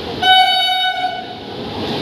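Train horn of the 02301 Rajdhani Express sounding one steady, high blast of about a second, a quarter-second in, as the train approaches. The rumble of the oncoming train grows louder near the end.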